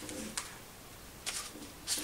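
Pages of a hardcover picture book being turned by hand: short papery rustles about a second in and again near the end.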